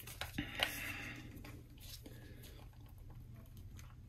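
Faint handling of plastic action-figure parts: a few light clicks and a short rustle in the first second or so, then only faint ticks.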